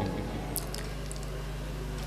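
Quiet pause filled by a low, steady electrical hum from the public-address system, with a few faint ticks about half a second in.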